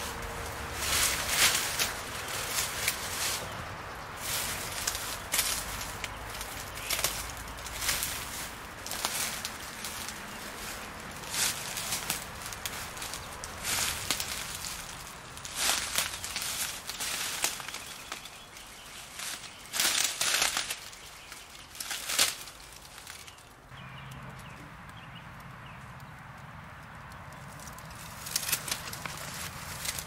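Footsteps in dry leaves and twigs: uneven rustling, crackling steps. They drop away for a few seconds past the two-thirds mark, leaving a low steady hum, and pick up again near the end.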